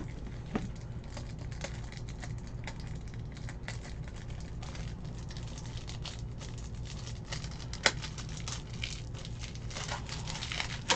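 Trading cards and their packaging being handled: small rustles and clicks throughout, with one sharp click about eight seconds in, over a steady low hum.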